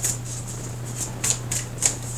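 A tarot deck being shuffled by hand: several short, crisp flicks of the cards, over a steady low hum.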